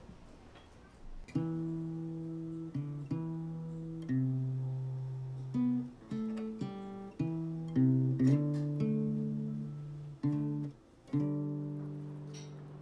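Acoustic guitar music: slow strummed chords, each left to ring out and fade, starting about a second and a half in.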